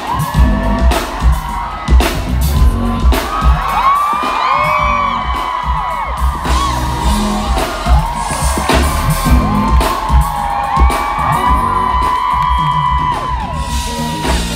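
Live pop concert music over a loud outdoor sound system, with a steady pounding kick-drum beat, and fans in the crowd screaming and whooping over it.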